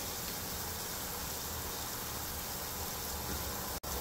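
Thick lamb curry sauce, with a little added oil, sizzling and bubbling steadily in a frying pan over a gas burner as it reduces. It cuts out briefly near the end.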